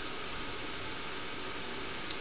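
Steady background hiss, even and unbroken, with no distinct events.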